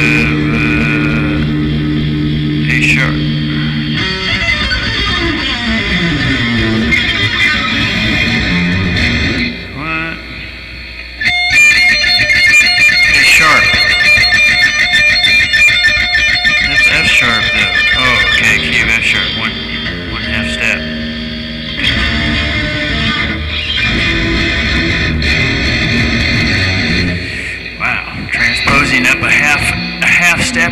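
Guitar played solo, improvised: held chords and notes that slide down in pitch. About ten seconds in it drops away briefly, then comes back louder with brighter, ringing notes.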